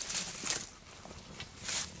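Two short soft rustles, one at the start and one near the end, over a faint outdoor background.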